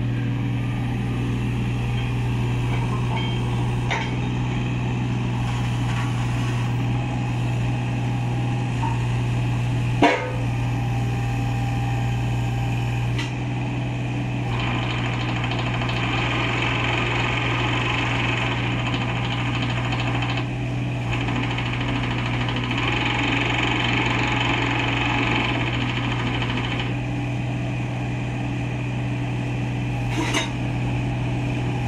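Kubota U25-3 mini excavator's three-cylinder diesel running steadily while the hydraulics work the boom, arm and slew. There is a sharp knock about ten seconds in. From the middle until near the end a louder, higher hydraulic hiss rides over the engine.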